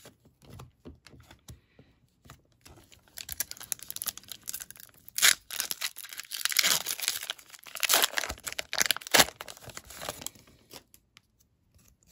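A foil Pokémon booster pack wrapper being torn open by hand. It crinkles and crackles for several seconds, with a few sharper rips, after some light clicks of cards being handled.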